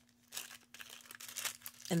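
Clear plastic packaging bag crinkling faintly and irregularly as it is handled, starting about a third of a second in.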